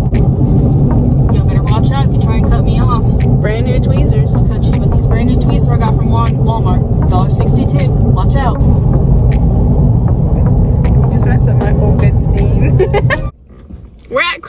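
Interior road noise of a Toyota car at highway speed: a loud, steady low rumble, with a few brief bursts of a woman's voice over it. It cuts off suddenly near the end.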